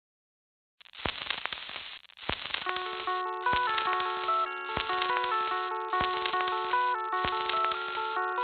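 Silence for the first second. Then the thin, filtered-sounding intro of a post-grunge hard rock song begins: a drum hit about every 1.2 seconds with crackly noise between, and a picked guitar melody coming in about three seconds in.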